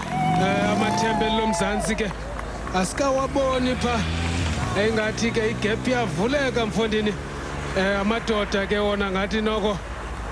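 A man's broadcast commentary, likely in an African language the recogniser did not transcribe, over a vehicle engine's steady low hum that rises in pitch at first and fades out about halfway through.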